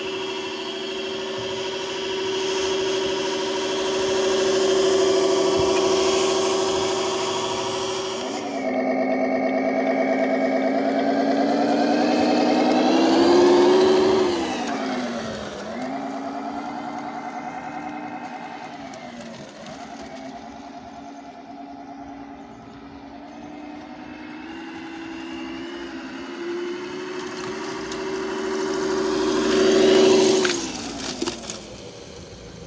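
Sampled semi-truck diesel engine sound played through the RC truck's onboard speaker by its ESP32 sound controller. It holds steady at top revs in first gear for about eight seconds, then drops and climbs in pitch in a few revving sweeps. The pitch falls sharply about halfway through and briefly again later, then rises slowly near the end.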